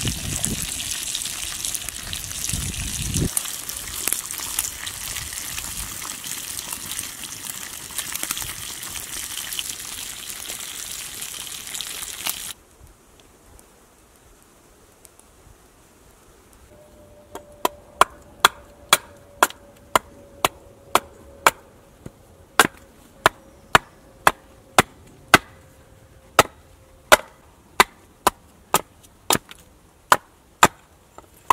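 Bacon sizzling in a frying pan over a campfire, cutting off suddenly about twelve seconds in. After a few quieter seconds, a steady run of sharp chopping strikes into wood on a stump block, about two a second.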